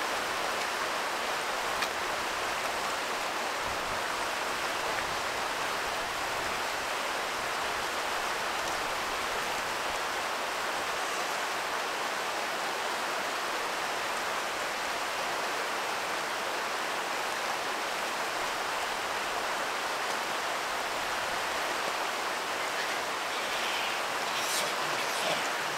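Steady, even rush of running water with no distinct events.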